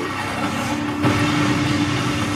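Audio of the anime episode being watched: a steady humming drone over a rumbling, engine-like noise that grows heavier about a second in.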